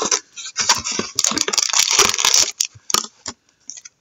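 Card packs and a cardboard hobby box being handled, rustling and scraping in quick, irregular crackles that thin out near the end.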